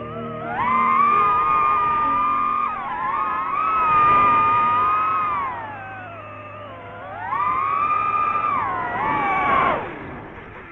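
DJI FPV drone's motors and propellers whining, the pitch climbing and falling with the throttle in several swells: high and steady for a few seconds, sagging low around the middle, then climbing again and dropping off near the end.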